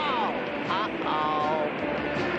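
Wordless cartoon voices whooping over a steady rushing surf sound: a falling cry at the start, then short calls and a held yell around the middle.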